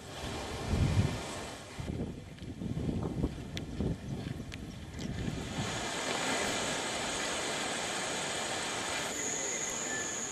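Outdoor field ambience: uneven gusts of wind buffeting the microphone for the first few seconds, then a steady hiss with a thin, high, steady whine.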